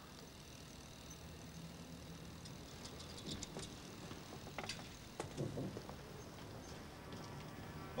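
Faint outdoor background with a few light taps and clicks, a short cluster about three seconds in and a sharper single click a little over four and a half seconds in.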